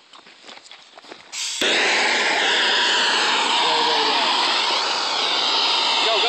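Hand-held gas torch starting up abruptly about a second and a half in, then hissing loudly and steadily at full flame.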